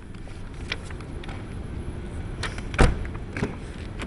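Small clicks and rustles of someone moving in and out of a car, then one loud, heavy thump about three quarters of the way through: a car door being shut.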